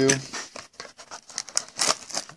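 Plastic wrapper of a sealed basketball card pack crinkling and tearing as it is handled and opened, with a louder crackle near the end.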